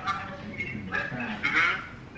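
A voice on the other end of a phone call, heard faintly through the handset's earpiece.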